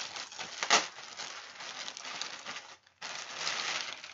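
Thin plastic bag crinkling and rustling as it is handled and pulled off a hoop skirt, with one sharper, louder rustle a little under a second in and a brief pause just before the end.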